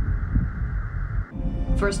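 Low, unevenly pulsing rumble under a steady hiss, a sci-fi ambience sound effect, which cuts off a little over a second in. Steady music tones take over, and a woman's voice starts speaking just before the end.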